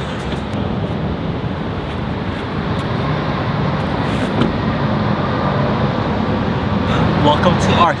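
Steady outdoor traffic noise, an even rush of road vehicles with no single car standing out. A man's voice says 'oh' at the very end.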